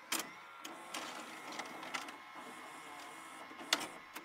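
VCR tape transport whirring faintly, with scattered small mechanical clicks and one louder click near the end.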